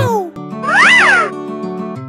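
A single cat meow, rising then falling in pitch and lasting under a second, over soft held background music.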